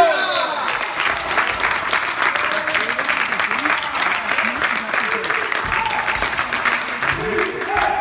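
Many hands clapping steadily in a big sports hall, applause after a point ends, with a shout at the very start and voices calling over it.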